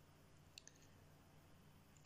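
Near silence: room tone, with two quick faint clicks of a computer mouse a little over half a second in.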